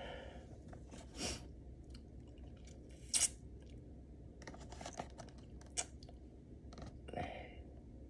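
A few faint, scattered clicks and short rustles from a cardboard box being shifted in the hands, with a sharper click about three seconds in.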